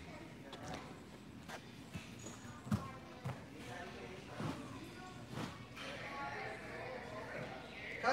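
Background sound of a large gym: faint voices in the distance and a few scattered knocks and thuds.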